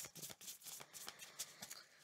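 A deck of oracle cards being shuffled by hand: a quick, faint run of small flicks and clicks of card edges.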